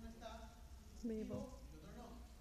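Speech only: a man lecturing in Spanish, heard faintly from the audience seats, with one louder, drawn-out vowel about a second in.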